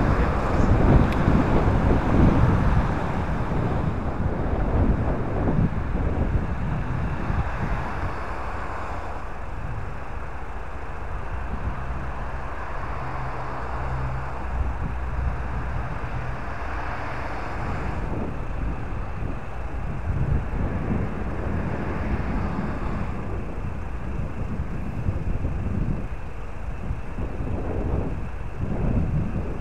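A vehicle driving with road and wind noise on the microphone, then slowing to a stop and idling, its engine humming steadily.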